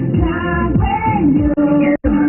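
A woman singing into a handheld microphone over music with a steady, regular beat, her held notes sliding in pitch. The sound drops out for an instant about one and a half seconds in.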